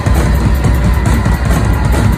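Loud live rock band playing: drum kit and electric guitar together, with no breaks.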